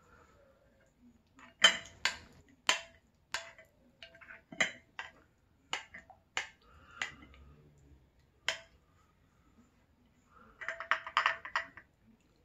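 Spoon clinking against a glass bowl as thick, creamy food is stirred and scooped: a string of sharp single clinks, then a quick flurry of clinks near the end.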